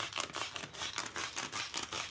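Hand trigger spray bottle pumped in a quick series of short spritzes, wetting a mini-split evaporator coil with coil cleaner.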